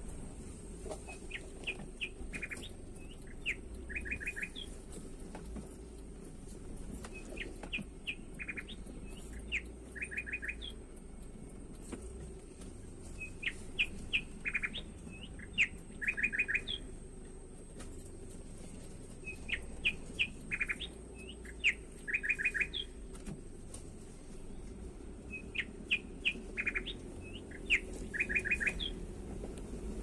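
A songbird singing the same phrase over and over, about every six seconds. Each phrase is a few short whistled notes ending in a quick, even run of four or five notes.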